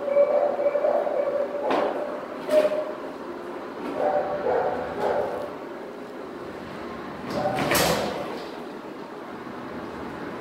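Dogs barking in shelter kennels, in several bouts, with the loudest bout about eight seconds in.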